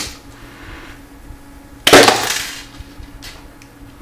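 Homemade spring-loaded paper ballistics knife firing: one sharp, loud snap about two seconds in as the airsoft mainspring launches the paper blade, fading over about half a second.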